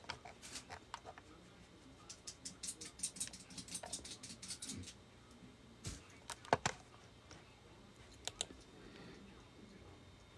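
Computer keyboard typing, faint: a few keystrokes at first, a quick run of them in the middle, then scattered single clicks.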